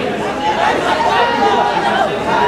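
Chatter of several voices talking over one another, with no single voice standing out.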